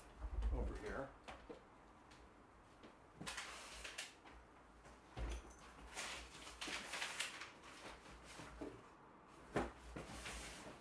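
Scattered knocks, scrapes and rustles from someone moving about off to one side while fetching and handling a cardboard box of books. A sharper knock comes near the end.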